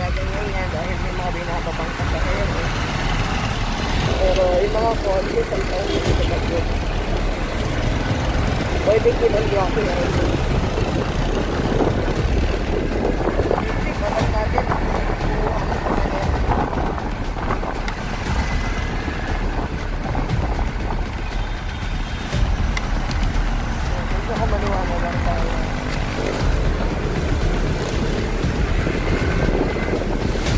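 Steady wind rush and road noise from a motorcycle riding in traffic, buffeting a helmet-mounted microphone.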